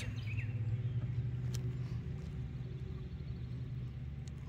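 A steady low mechanical hum, like a motor or engine running in the distance, with a bird chirping faintly once near the start.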